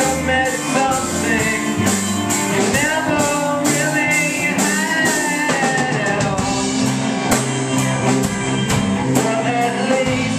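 Live rock band playing electric guitar and drum kit, with a man singing over them.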